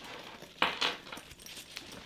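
Metal swivel hooks and strap hardware clinking and clicking as a webbing strap is clipped onto a bag's D-ring, with a louder clatter a little over half a second in.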